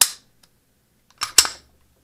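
Canik TP9SA striker-fired pistol being decocked: a single sharp metallic click a little over a second in as the slide-top decocker, pressed firmly with the thumb, drops the cocked striker.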